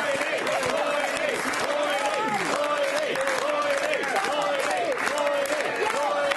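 Studio audience and panel applauding and laughing, with voices calling and whooping over the clapping.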